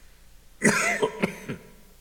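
A man coughing close to a microphone: one sharp cough just over half a second in, then three shorter coughs in quick succession.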